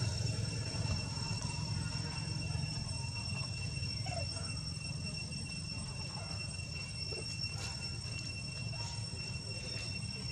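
Steady outdoor background noise: a constant low rumble with a thin, continuous high-pitched whine over it, and a few faint short chirps and ticks.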